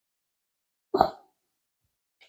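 One short, sharp sound from a brindle mastiff puppy about a second in.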